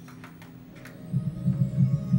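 A low hum that breaks into loud throbbing pulses, about three a second, a second in, with a few faint clicks in the first second.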